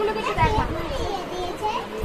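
Young children's voices chattering, with no clear words.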